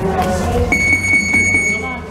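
A single steady, high electronic beep, held for over a second, starting a little under a second in, over music.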